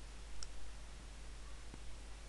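A single short click about half a second in and a fainter tick near the end, over a steady low hum and faint room noise.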